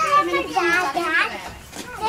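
Young children's high voices chattering and calling out as they play, quietening briefly near the end.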